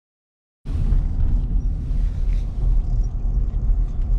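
Silence for about the first half second, then the steady low rumble of a moving vehicle heard from inside its cabin: engine and road noise while driving.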